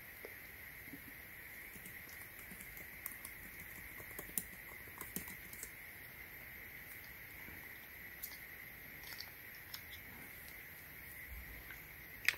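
Faint, irregular key clicks from typing on a MacBook Air keyboard, over a steady low hiss.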